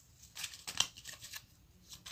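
Paper rustling and crinkling as folded slips of notepaper are moved and unfolded by hand: a cluster of crisp crackles in the first second and a half, then quieter.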